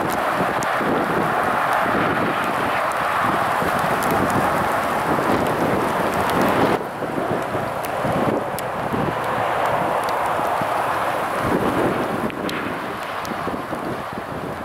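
Strong gusty wind blowing over the camera microphone: a loud, steady rushing noise that dips briefly about halfway through.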